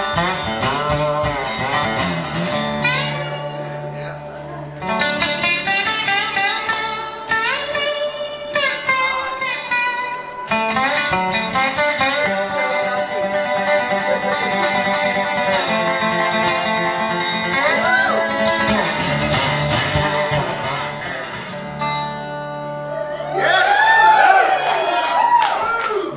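Blues intro picked on a metal-bodied resonator guitar, a run of bright, ringing single notes and chords. A man's singing voice comes in over the guitar near the end.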